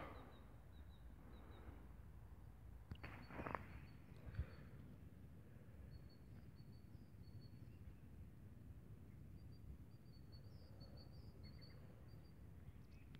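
Near silence: faint outdoor quiet with a small bird's high, thin chirps coming in short runs, more of them near the end, and a few faint soft noises about three to four seconds in.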